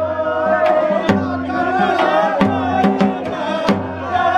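Suketi nati, Himachali folk dance music, playing loudly: a steady drum beat, several strokes a second, under a wavering, sustained melody line.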